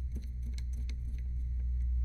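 A steady low background hum, with a few faint light clicks from a small precision screwdriver turning a tiny screw.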